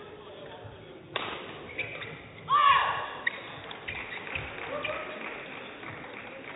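Sports-hall ambience during a break in play: a sharp knock about a second in, then short high squeaks and a brief voice-like call near the middle, over a steady murmur in the hall.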